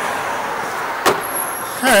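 Rushing noise of a passing road vehicle that slowly fades, with a single sharp click about a second in.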